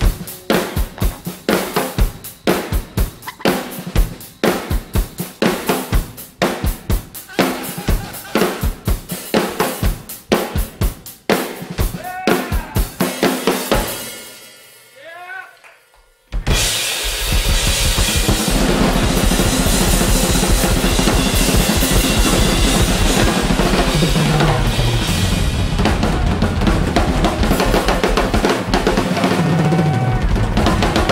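Two drum kits played together: a driving beat of separate kick, snare and tom strikes that dies away after about fourteen seconds into a short break. Then both kits crash back in at once, with a dense, loud wall of drums and cymbals.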